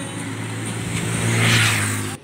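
A motorcycle passing close by on the road, its engine and tyre noise building to a peak about one and a half seconds in, then beginning to fade.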